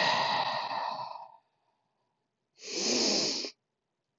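A person's deep, audible breathing close to the microphone: one long breath lasting over a second, then a shorter breath near the end. It is slow, deliberate yoga breathing in child's pose.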